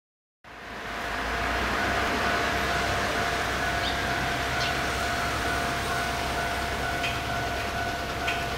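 Freight train hauled by a JR Freight EF210 electric locomotive approaching from a distance: a steady low rumble with a thin steady whine over it, fading in about half a second in. A few short faint chirps come through the noise.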